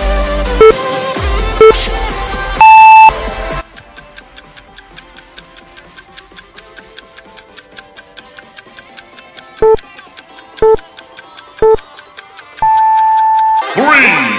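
Electronic workout-timer beeps. Short beeps a second apart count down, then a long, higher beep marks the end of the set, and the dance music drops away to a quiet, rapid, steady ticking. Near the end, three more short beeps a second apart and a long beep count into the next set as the music comes back.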